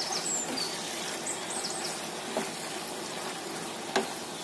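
Chopped chicken sizzling in a soy and chilli sauce in a frying pan over high heat, a steady sizzle while a wooden spatula stirs it, with a light knock of the spatula on the pan midway and a sharper one at the end.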